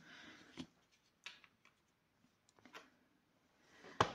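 Near silence with a few faint light taps of craft items being handled and set down on a cutting mat.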